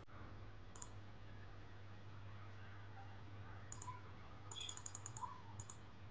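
Faint computer mouse clicks: single clicks about a second in and near the end, and a quick run of several clicks just past the middle, over a low steady hum.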